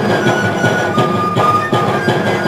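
Andean traditional ensemble music: several end-blown cane flutes playing a shrill melody in long held notes over a steady beat on a large double-headed drum.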